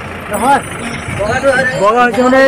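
Voices of people talking over a low, steady rumble.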